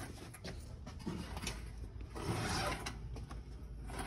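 Faint metallic clicks and clinks from a bare V8 engine block swinging on a hoist chain as it is lifted out of the engine bay, with a short scraping rush about two seconds in.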